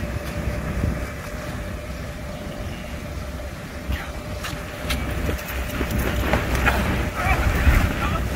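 Steady hum of an inflatable ride's electric air blower, under a low wind rumble on the microphone. In the last couple of seconds it grows louder and busier, with thuds and scuffs as two players run and dive along the inflatable lane.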